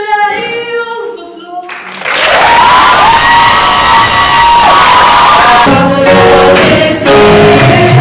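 Two female voices singing a cappella, ending about two seconds in, followed by loud audience applause and cheering with a long high whoop. Near the end a gospel choir with accompaniment starts up.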